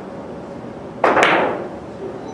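A carom billiards shot: a sudden, loud hit about a second in that fades over about half a second, with a sharp click of ivory-hard balls colliding just after it.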